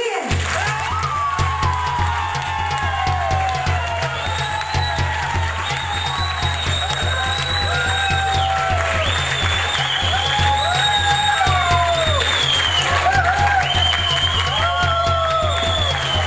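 Live band music: a steady, pulsing bass beat under a bending lead melody, with audience applause over it.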